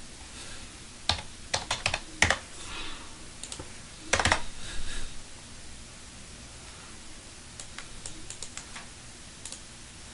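Computer keyboard keystrokes as numbers are typed into a field, in short scattered clusters, with the loudest group about four seconds in and faint taps near the end.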